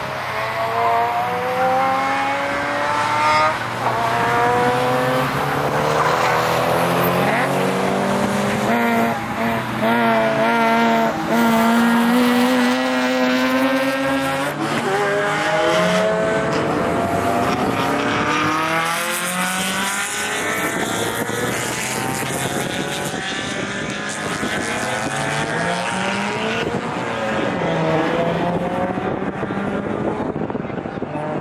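Several cars' engines revving hard on a track, each pitch climbing and dropping again as they shift and brake, with more than one car heard at once.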